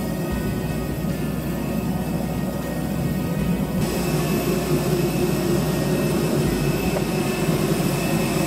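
Steady jet airliner noise on the apron, a low rumble under a high whine and hiss. The hiss gets louder about four seconds in.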